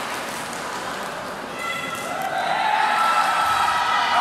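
Voices echoing in a large indoor sports hall: a low background murmur, then a louder voice calling out from about a second and a half in.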